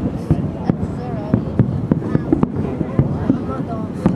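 Fireworks display going off: a quick irregular string of bangs and crackles, about three a second, under the chatter of a crowd of onlookers.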